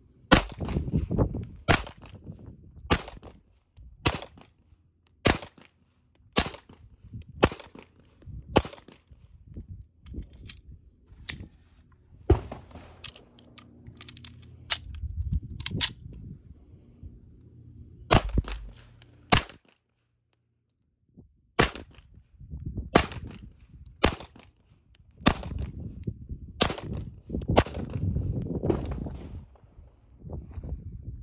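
Manurhin-made Walther P1 9mm pistol firing a long string of single shots, about one a second, with a short pause about two-thirds of the way through.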